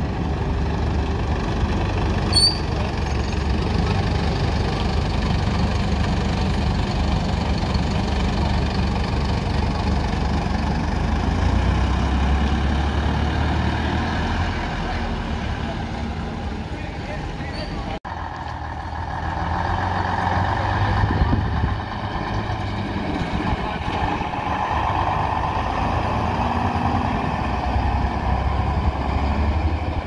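Diesel bus engines running as buses drive slowly past at low speed: first a modern minibus, then vintage single-deck and double-deck buses.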